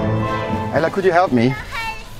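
Background music fading out, then a young child's voice calling out in short high-pitched bursts about a second in.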